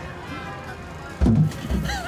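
Background music under fairground crowd noise, broken a little over a second in by a sudden loud low thud, then a burst of laughter near the end.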